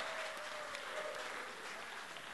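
Light audience applause in a room, faint and slowly dying away.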